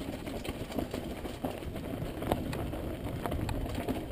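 Mountain bike rolling fast down rough, rocky dirt singletrack: a continuous rattle of tyres, frame and drivetrain over the ground, broken by frequent sharp clicks and knocks as the bike hits rocks and brush.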